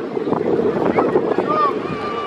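Large crowd of spectators talking over one another, with a few voices calling out above the babble and wind buffeting the microphone.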